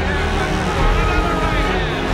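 A boxing arena crowd cheering and shouting, a loud steady mass of voices that swells briefly about a second in.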